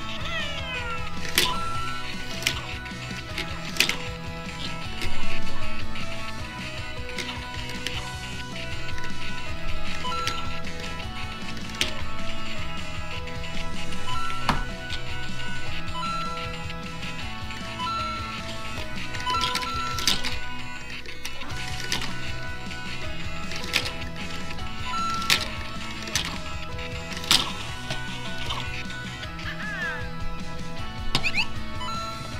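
Music playing throughout in a repeating pattern of short held notes, with scattered sharp clicks and taps and a brief sweeping electronic glide at the start and again near the end.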